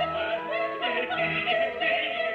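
Recorded operatic singing: a voice singing with vibrato over held instrumental notes.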